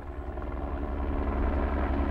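Helicopter in flight, its rotor and engine sound fading in and growing steadily louder.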